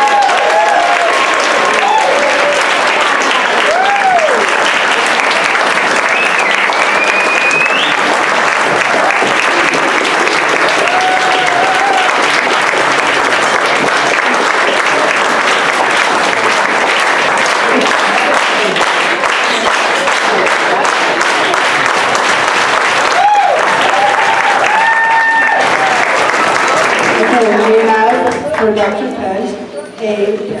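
A room full of people giving a long, steady round of applause, with a few voices calling out over the clapping.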